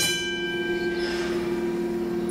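Tram's warning bell ringing out and fading over about a second and a half, over a steady electrical hum in the driver's cab.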